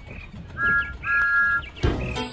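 A steam locomotive whistle sounds twice as two short, steady two-note blasts, over faint birdsong. Music with a beat starts just before the end.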